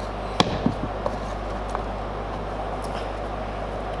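A single sharp knock about half a second in, then a couple of softer taps, as the wooden workpiece and filler tool are handled on the bench, over a steady background hum.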